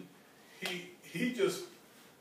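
Speech in a small room: two short bits of voice, about half a second in and around a second and a half in, with a sharp click at the start of the first.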